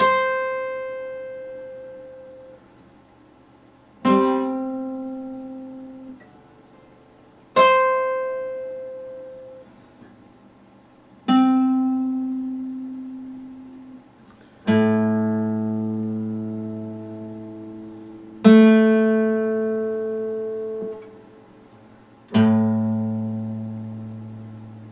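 Epiphone steel-string acoustic guitar played slowly: seven single plucked notes or chords, each left to ring and fade for several seconds before the next, the last three lower and fuller.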